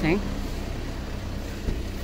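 A car engine running with a low, steady hum, amid even street noise.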